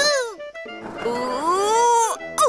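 A cartoon character's high-pitched vocal whoops, swooping down at the start and gliding up again from about a second in, over light children's background music.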